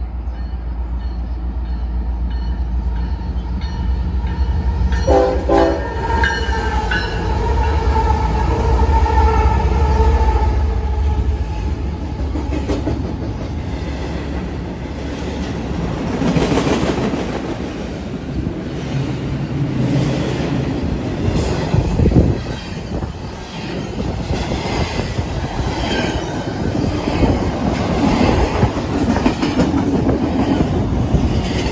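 Union Pacific diesel freight locomotives approaching with a low engine rumble and sounding the horn about five seconds in: a few short blasts, then one long note lasting about six seconds. The locomotives then pass, and double-stack intermodal container cars roll by with the clickety-clack of wheels over the rail joints.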